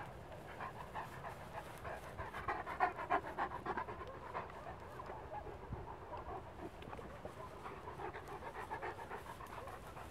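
A Great Pyrenees panting close by in quick, even breaths, loudest a few seconds in.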